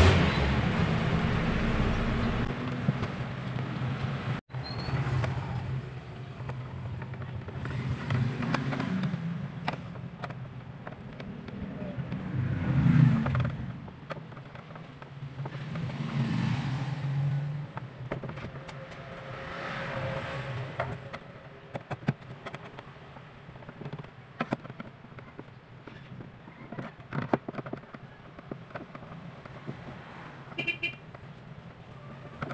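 Screwdriver backing out screws from the plastic back panel of a portable party speaker: scattered small clicks and scrapes, most of them in the later part. Behind them, background noise rises and falls every few seconds.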